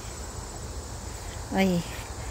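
Crickets trilling steadily in a high, fine pulsing tone, over a low rumble on the microphone; a woman's short "ay" near the end.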